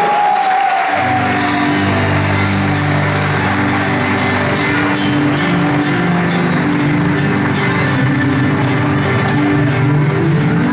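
Live gaúcho quarteada dance band with accordion and guitars playing an upbeat tune, the bass coming in about a second in. The audience claps along in steady time.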